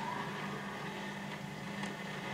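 Surface noise of a vinyl single after the song has ended: a steady hiss with a low hum and a faint click near the end.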